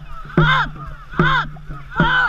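A voice on a racing dragon boat shouting a short call in time with the paddle strokes, a bit more than once a second, each call falling in pitch: two calls and the start of a third near the end.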